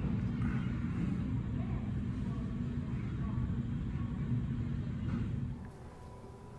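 Steady low rumble of airport terminal ambience heard through the glass, with faint indistinct voices. It drops away abruptly near the end.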